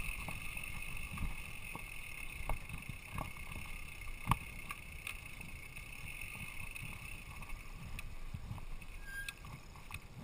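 Mountain bike riding down a dirt singletrack: a steady rumble of tyres and air on the microphone, with sharp knocks and rattles from the bike going over bumps, the loudest about four seconds in.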